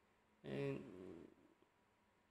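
A man's soft, drawn-out hesitation sound, "à", starting about half a second in and trailing off within a second. The rest is near silence.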